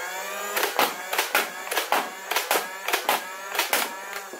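A bone-stock Nerf Elite Rayven flywheel blaster firing: its motors whine, rising in pitch as they spin up, under a quick string of about a dozen sharp dart shots.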